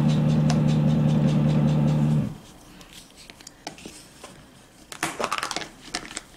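Steady mechanical drone of construction work next door, a motorised tool running with a low hum, cutting off suddenly about two seconds in. After that it is much quieter, with a few light clicks and taps near the end.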